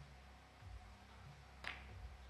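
Single sharp click of a three-cushion billiard shot, late in an otherwise near-silent stretch: the cue tip striking the cue ball, which meets the close-lying object ball at once.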